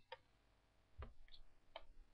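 Near silence broken by three faint, short clicks spread across two seconds, from working a computer's mouse or keys.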